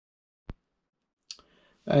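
Two short clicks, the first about half a second in and the second, sharper and higher, just after a second, in otherwise dead silence; a man's voice starts right at the end.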